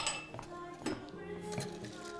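A few sharp clinks and knocks of glassware and bar tools being handled, over soft background music that comes in about a second in.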